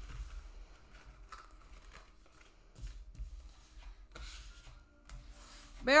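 Tarot cards being handled on a table: faint rustling and sliding of card stock with scattered light taps as the cards are gathered up.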